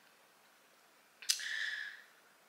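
Near silence, then about a second in a sharp mouth click followed by a short breath through the mouth lasting under a second.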